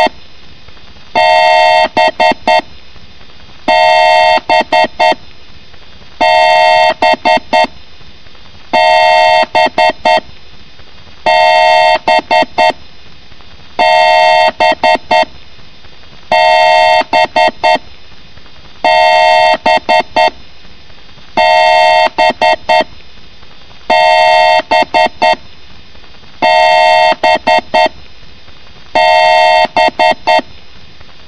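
A loud, looped electronic beep: a horn-like two-note tone held for about a second, then three or four quick short beeps, repeating about every two and a half seconds.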